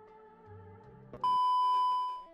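Faint background music, then a loud, steady electronic beep tone that starts about a second in and holds before fading near the end.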